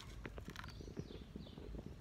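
Faint scattered taps and rustles of a phone being handled and moved, over a low background hum.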